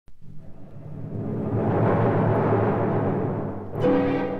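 Opening of a dramatic orchestral library music piece: a low drum roll swells up from nothing, holds, and dies away. Near the end, sustained orchestral notes come in.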